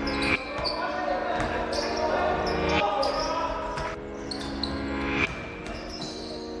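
A basketball bouncing, with short high squeaks, over sustained music chords that drop out and return. This is intro sound design.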